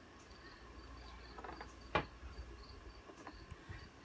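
Faint, high-pitched chirping repeating about three times a second, like a cricket, over the soft rustle of hands working a synthetic hair topper. A single short click or syllable about halfway through.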